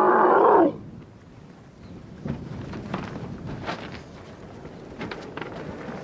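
A dromedary camel bellowing loudly while a rider climbs up its neck into the saddle. The call breaks off about a second in, leaving quieter outdoor sound with a few soft knocks.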